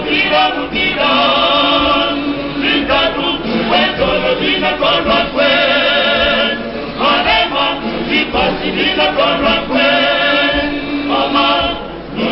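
Male choir singing in harmony, with long held chords sung with vibrato about every four seconds between shorter, quicker phrases.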